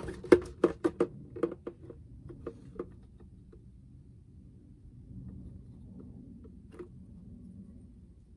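Light clicks and taps of a thin plastic bottle, metal ruler and X-acto knife being handled on a cutting mat as the cutting line is marked. The clicks come three or four a second for the first few seconds, then stop, with one more click near the end.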